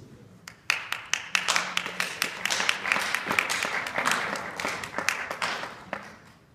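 Audience applause. Many people clapping start a little under a second in, with individual sharp claps standing out.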